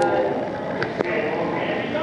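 Onlookers' voices chattering in the background, with a few sharp clicks at the start and around one second in.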